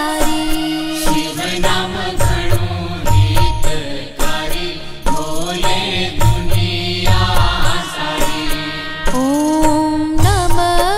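Gujarati devotional bhajan music: melodic lines with held and gliding notes over a deep drum beat that lands about once a second.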